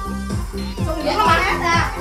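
Karaoke backing track of a Vietnamese children's song playing from a TV with a steady, evenly repeating beat. A voice, childlike in character, rises and falls over it from about a second in.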